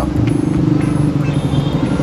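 A motor vehicle engine running with a low, steady drone.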